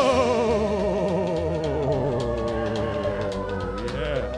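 Live rock band playing: a long wavering note with heavy vibrato slides slowly down in pitch over a pulsing bass line, with a short swoop down and back up near the end.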